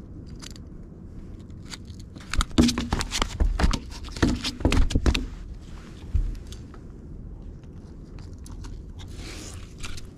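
Handling noise of a landed snook on wooden dock boards while the hook is checked: knocks, clicks and scrapes, loudest in a cluster of sharp knocks from about two to five seconds in, then quieter scraping.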